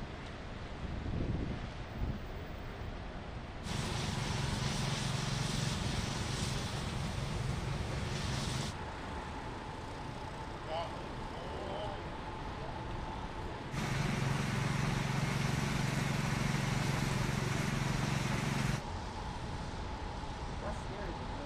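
Snowy city street ambience with vehicle engine noise, which grows louder in two stretches of about five seconds each that start and stop abruptly, one about four seconds in and one about fourteen seconds in.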